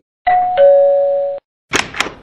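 Two-tone doorbell chime: a higher note, then a lower one, ringing for about a second. A short noisy burst follows near the end.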